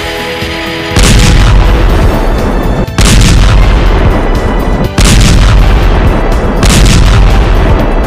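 Background music, cut into about a second in by a loud, distorted boom-like blast effect that repeats three times about two seconds apart, each lasting about two seconds.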